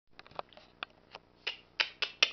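A person snapping their fingers: about eight sharp, uneven snaps, the later ones louder.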